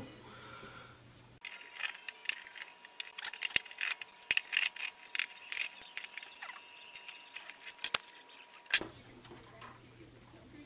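Screwdriver working screws out of a plastic turntable base: many light, irregular clicks and small metallic rattles of the screws and driver, with one sharper click near the end.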